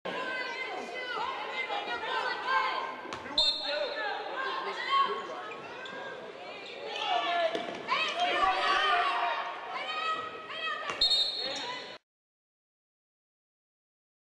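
Basketball game sound from courtside: a ball bouncing on the hardwood, knocks and voices of players and a thin crowd in the arena. There are two brief high tones, about three and eleven seconds in, and all sound cuts off abruptly about twelve seconds in.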